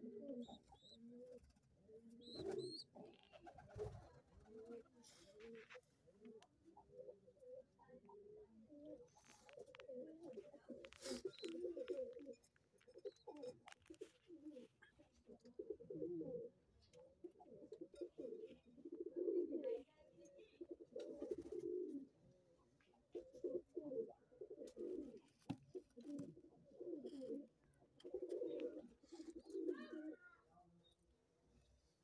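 Domestic pigeons cooing: low, warbling coos repeated in runs with short pauses, and a few sharp clicks between them.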